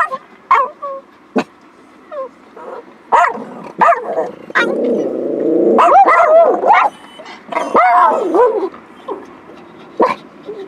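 A dog close to the microphone barks and yelps in a rapid run of short calls, with longer whining calls near the middle.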